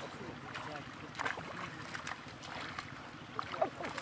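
Pond water sloshing and splashing around men wading and hauling a seine net through the shallows, with a few short splashes.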